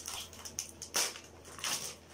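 Christmas wrapping paper being torn and crinkled by hand as a present is unwrapped, in a few short rips, the loudest about halfway through.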